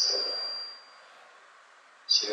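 A sudden high-pitched ring, a single thin tone that fades out over about a second.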